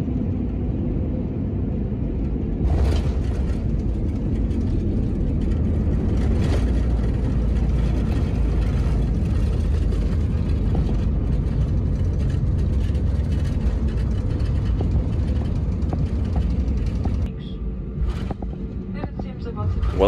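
Airbus A320neo landing, heard from inside the cabin: a steady low rumble, a knock about three seconds in as the wheels touch down, then a louder rumble through the runway rollout that drops near the end as the aircraft slows.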